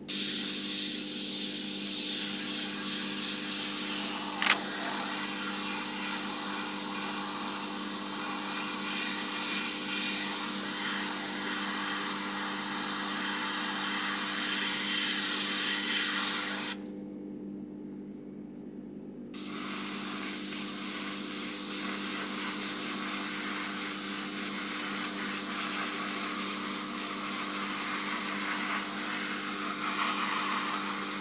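GAAHLERI 98D airbrush with a 0.5 mm nozzle spraying paint: a steady hiss of air and paint that stops for about two seconds a little past halfway, then starts again and runs on.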